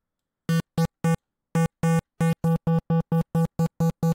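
A sine-wave synth note driven through Bitwig Amp's pixelated distortion, giving a buzzy square-wave tone at one steady low pitch, played as about a dozen short notes that come closer together toward the end. The distortion's bias control is being changed, shifting where the pixelation bites into the waveform.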